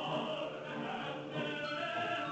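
Opera chorus singing with the orchestra, many voices sustained together in a dense, steady sound.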